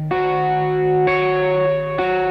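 Ibanez electric guitar played through an amp-modelling plug-in: notes of a chord picked just after the start, more notes added about a second in, all left ringing.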